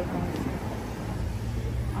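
Street background noise: a steady low rumble, typical of road traffic.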